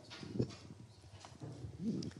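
A few soft knocks and clicks, spaced irregularly, with a faint voice near the end.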